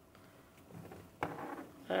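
Quiet room tone, then about a second in a single knock as a handheld CB microphone is put down, followed by a short hesitant 'uh' from a man's voice.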